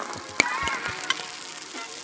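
Sound effect of an ink-splatter animation: a hissing, crackling splatter noise that slowly fades, with two sharp clicks about half a second and a second in.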